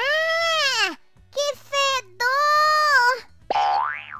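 A girl's high-pitched cartoon voice crying out in disgust at a stench, a long drawn-out "Argh!" followed by "Que fedor!". Near the end comes a quick rising comic sound effect, over faint background music.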